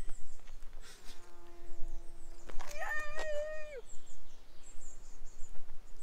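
A woman's drawn-out cheer of "Yay!" about three seconds in, preceded by a faint steady hum and a couple of light clicks.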